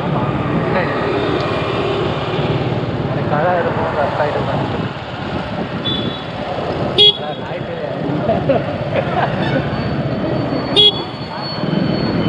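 Street traffic heard from a slow-moving motorcycle in city traffic: steady engine and road noise, with two short, sharp horn toots, one about seven seconds in and another near eleven seconds.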